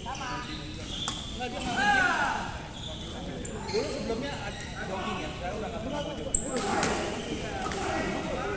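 Badminton rally in a large indoor hall: sharp racket hits on the shuttlecock, the loudest one just past six seconds in. Shoe squeaks on the court floor and indistinct voices carry around the hall.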